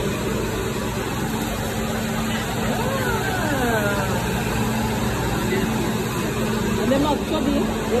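Steady low hum of store background noise with faint, indistinct voices of people talking, heard most around the middle and near the end.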